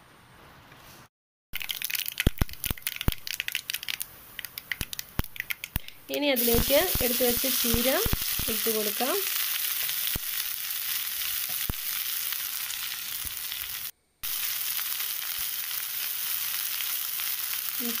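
Hot oil in a pan crackling and popping, then from about six seconds in a steady sizzle as chopped cheera (amaranth) leaves fry.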